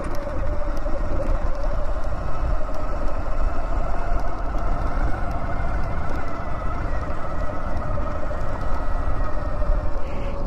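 Electric bike's motor whining at a steady pitch while riding a dirt trail, over a heavy low rumble of wind on the microphone and tyres on the ground.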